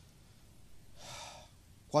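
A man's short, sharp intake of breath into a close microphone about a second in, then his voice starting to speak near the end.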